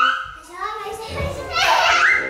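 Two toddlers squealing and babbling as they play, with a loud shriek near the end. Their small feet thud on the laminate floor as they run around.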